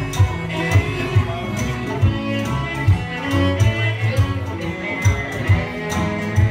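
Live bluegrass string band playing an instrumental passage: a bowed fiddle leading over upright bass, guitar and banjo, with drums keeping a steady beat of a little over two strokes a second.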